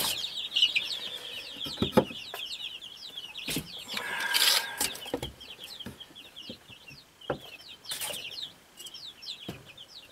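Young birds chirping in a steady stream of quick, high calls; these are fledglings learning to fly and disturbing each other. A few light wooden knocks and taps come in between.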